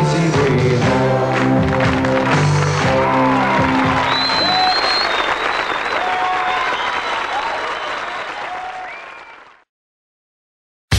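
A live band closes out a pop song on its final chords, then an audience applauds with whistles. The applause fades out and drops to silence shortly before the end.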